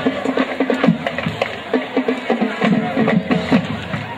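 Band music with many drum strokes, a few per second over a low pitched line, stopping near the end.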